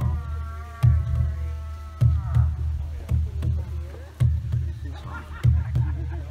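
Large rawhide-covered hand drum struck softly, low booming beats a little over a second apart, several followed closely by a second lighter beat. A steady pitched tone sounds over the first two seconds.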